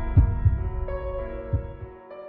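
Dark background music: held synthesizer chords with low, heartbeat-like thumps, a double thump near the start and another about a second and a half in, fading out toward the end.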